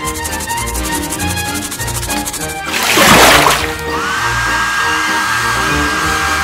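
Background children's music, with a short loud whoosh of noise about three seconds in. From about four seconds in, a hair dryer runs steadily with a high whine.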